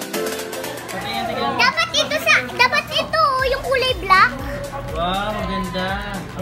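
Children's high, excited voices, shouting and squealing for a few seconds over background music with a steady beat. Lower talking voices follow near the end.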